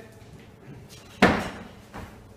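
A single sharp slam about a second in as the lifter's feet land on the gym floor, dropping into the overhead squat catch of a light snatch, ringing briefly after.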